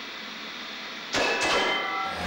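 Steady television static hiss, then about a second in a louder rushing sound effect with a few faint thin tones over the noise.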